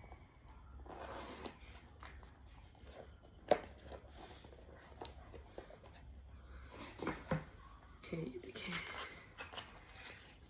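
White cardboard watch packaging being handled: card sliding and scraping against card as the inner box comes out of its sleeve, with one sharp click about three and a half seconds in and a lighter one a little later.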